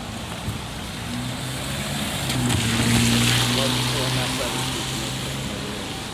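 A car driving past on the street: a low engine hum and tyre noise swell to a peak about three seconds in, then fade away.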